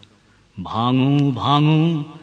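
A man's voice reciting Bengali poetry: after a short pause, he draws out a word in two long, held, chant-like syllables.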